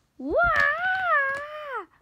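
A child's voice gives one long, wavering "wah!" cry that swoops up at the start and falls away at the end: a mock cub's wail made in pretend play.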